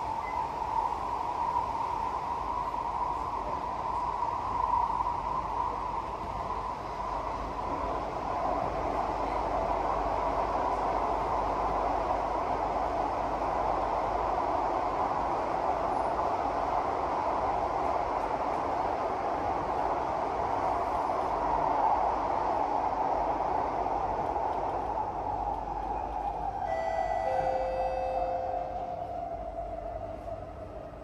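Singapore MRT train running between stations, heard inside the carriage: a steady rumble with a hum riding on it. The hum drops in pitch over the last several seconds as the train slows.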